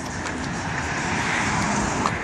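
A car passing on the street, its tyre and engine noise growing steadily louder as it approaches.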